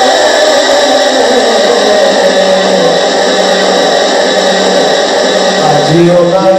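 A man singing a long held note of Punjabi kalam into a microphone, amplified. The note slides slowly down in pitch over the first few seconds and then levels off.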